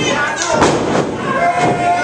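A wrestler slammed onto the ring mat: one heavy thud about half a second in, over crowd voices. A single long held tone follows near the end.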